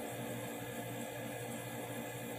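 Steady low background hum with hiss: room tone, with no distinct event.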